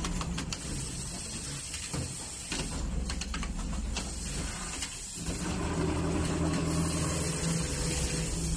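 Automatic sleeve placket sewing machine with a Brother 7300 sewing head at work: clicks and knocks as the fabric clamp and mechanism move, then from about five seconds in a steady running hum as it sews.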